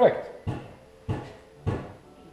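Footsteps on a workshop floor, a dull knock about every 0.6 seconds, three or four in all. A short vocal sound with falling pitch comes right at the start.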